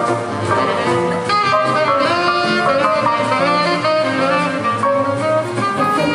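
Live jazz band: a saxophone plays a flowing melodic line over the rhythm section of guitar, drums and low bass notes.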